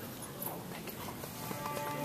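Soft violin music, with scattered faint clicks and taps.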